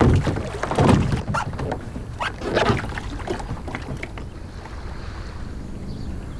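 A kayak being shoved off and paddled: several irregular splashing strokes of water in the first three seconds, then a quieter, steady wash of water.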